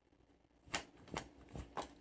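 A deck of oracle cards shuffled overhand between the hands, heard as four faint, quick card riffles about half a second apart, starting near the end of the first second.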